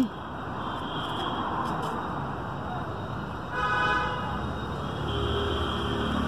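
Steady hiss of static from a Baofeng BF-888S walkie-talkie's speaker while no clear reply comes through: the signal is too weak at about two kilometres range. A vehicle horn honks briefly a little past halfway.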